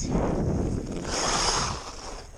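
Ice skate blades gliding and scraping over lake ice dusted with snow: two long strokes, the second with a sharper, higher scrape.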